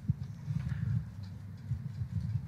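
A pause in speech: low room rumble with faint, irregular knocks.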